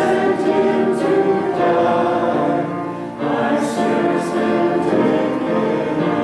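A congregation singing a hymn together, sustained notes with a short pause between phrases just after the start and again about three seconds in.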